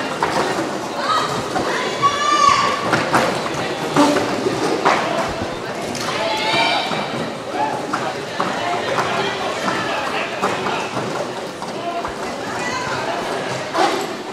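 Roller derby play in a large echoing sports hall: players' shouts and calls over a steady wash of quad-skate noise, with scattered thumps from blocking and skates striking the wooden floor.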